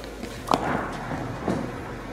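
Bowling ball landing on the lane with a sharp thud about half a second in, then rolling down the lane toward the pins, with a lighter knock about a second later.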